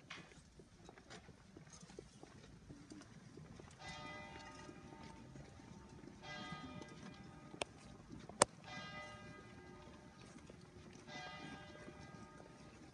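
A bell rings three times, each stroke ringing out for under a second, about four, six and a half and eleven seconds in, over the soft shuffle and tap of many footsteps of a slow procession on a paved path. One sharp click stands out a little past halfway.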